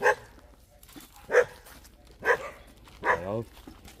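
A dog barking: three short barks about a second apart.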